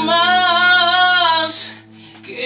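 A man sings one long held note with vibrato over the ringing chord of a nylon-string classical guitar. The note ends with a brief breathy hiss about a second and a half in, and the sound then drops away.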